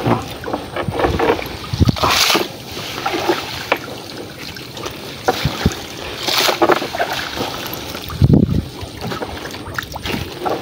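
Wet nylon netting of a bubu naga shrimp trap being handled and shaken, with water splashing and trickling off it in two louder bursts, about two and six seconds in. A low buffet of wind on the microphone comes near the end.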